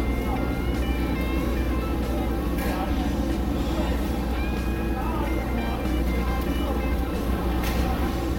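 Busy fish-market ambience: a steady low hum under indistinct voices and music, with a couple of brief clicks.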